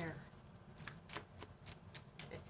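Tarot cards being shuffled by hand: a string of light, irregular card clicks.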